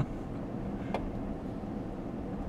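Steady low rumble of road and engine noise inside a moving car's cabin, with a short click at the start and another about a second in.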